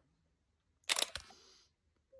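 A short burst of camera shutter clicks about a second in: two sharp clicks with a brief hiss after them.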